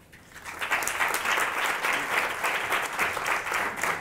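Audience applauding: a crowd clapping that swells up over the first second and then holds steady.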